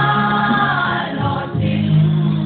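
A church choir singing a gospel praise song in Paite, the voices holding long notes in harmony and moving together to new notes.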